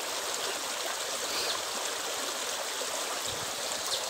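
A shallow rocky stream running steadily, an even wash of flowing water.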